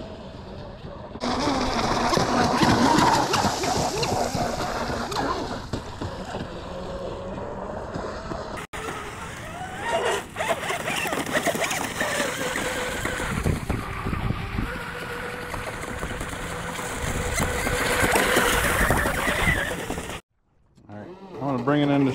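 Wind buffeting the camera microphone, with a faint whine from the Proboat Blackjack 42 RC boat's brushless motor drifting in pitch as it runs out on the water. The sound drops out briefly near the end.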